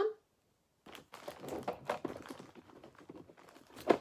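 A thin clear plastic bag crinkling and rustling as hands rummage in it. It starts about a second in, after a short silence, and goes on irregularly.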